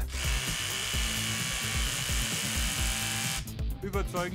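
Bosch GBH 18 V-EC cordless rotary hammer running steadily for about three and a half seconds, then stopping, with background music underneath.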